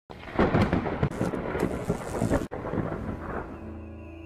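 Rumbling, crackling thunder with rain, cutting off suddenly about two and a half seconds in. A faint low steady tone follows near the end.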